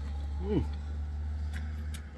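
A man gives a short, falling 'mm' of a hum while biting and chewing a piece of raw bamboo shoot, with a few faint mouth clicks. A steady low hum runs underneath.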